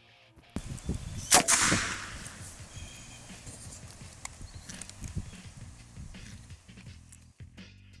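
DT Systems Super Pro Remote Dummy Launcher firing a .22 blank to throw a retrieving dummy: one sharp shot about a second and a half in, trailing off over about half a second.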